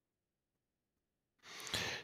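Near silence for about a second and a half, then a man's short breath into a close microphone just before he speaks.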